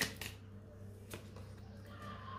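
Tarot cards being handled and shuffled by hand: a few quick card clicks at the start and one more about a second in, over a low steady hum.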